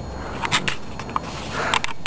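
Plastic water bottles being handled by hand: a few light clicks and rustles over a low rumble.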